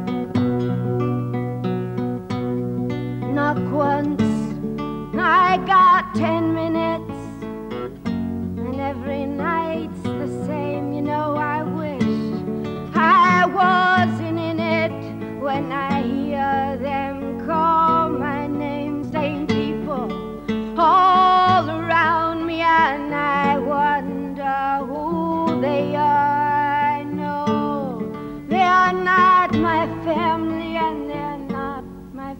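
A woman singing a slow folk song, her voice wavering with vibrato on long held notes, to her own acoustic guitar accompaniment.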